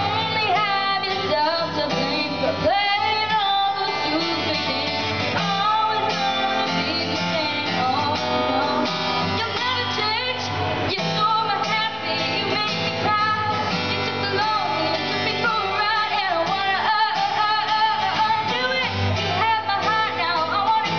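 A girl singing lead vocals while a boy strums an acoustic guitar, a live song performance with the voice carrying the melody throughout.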